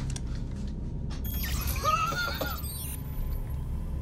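Low steady hum of a starship interior, with a burst of electronic console chirps and warbling, sweeping tones starting about a second in and lasting about a second and a half.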